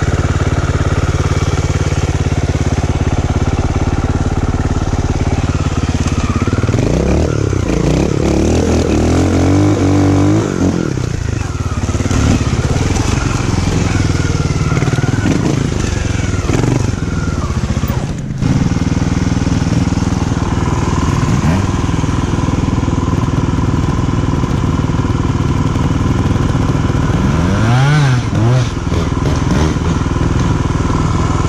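Trials motorcycle engine running close to the helmet camera, ticking over steadily with throttle blips. The revs rise and fall for several seconds about seven seconds in, and there is a short blip near the end.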